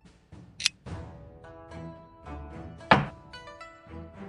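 Background music with two sharp clacks of a xiangqi app's piece-moving sound effect: a lighter one just over half a second in and a louder one about three seconds in.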